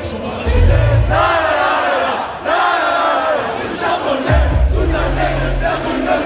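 Live rap concert: the audience shouts the lyrics together while the backing track's bass drops out, then the heavy bass beat comes back in about four seconds in.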